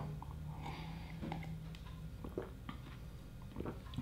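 A person gulping a thick protein shake from a plastic blender cup: faint swallowing with scattered small mouth and cup clicks.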